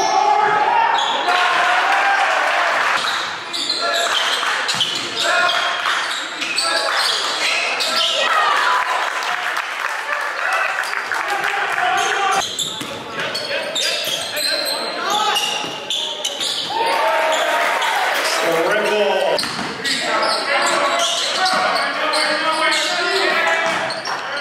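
Live basketball game audio in a large gym: the ball bouncing on the hardwood court amid indistinct shouts from players and spectators.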